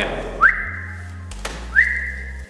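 Two short whistles, each sliding up quickly and then holding one steady high note for about half a second, with a brief click between them.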